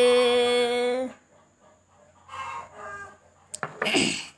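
A woman singing a Red Dao lượn folk song, holding one long steady note that ends about a second in. Fainter short sounds follow, with a sharp louder burst near the end.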